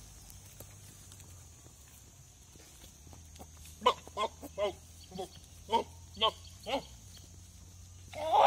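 Goat calling in a quick series of about seven short bleats, starting about four seconds in and spaced roughly half a second apart, after a quiet start.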